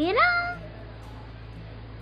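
A young girl's voice saying "Viram?" in a high, drawn-out sing-song that rises in pitch, in the first half second. After it there is only a steady low hum.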